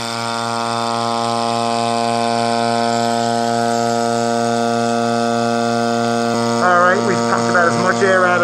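Electric vacuum pump running with a steady buzzing hum as it pumps the air out of a bell jar that holds a running electric bell.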